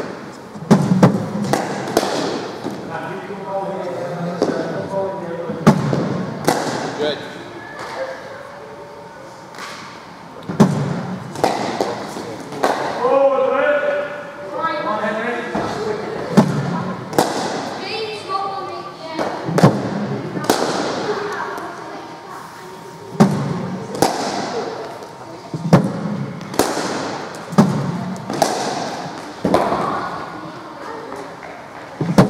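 Cricket balls hitting the bat and the pitch matting: sharp knocks every second or few, each ringing with the echo of a large indoor hall.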